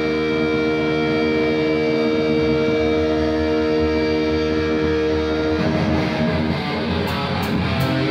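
Live heavy metal band: electric guitars and bass hold a ringing, sustained chord, then go into a riff about five and a half seconds in, with the drums coming in on cymbals near the end.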